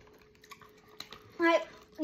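Faint clicks of someone chewing gummy candy in a quiet room, then a short spoken sound about one and a half seconds in.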